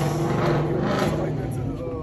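Turbocharged drag car's engine idling steadily, with voices over it.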